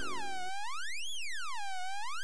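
Cartoon sound effect: a pure electronic tone sliding smoothly down and up in pitch in a slow, even warble, marking a trance-inducing stare. Background music stops about half a second in, leaving only the warbling tone.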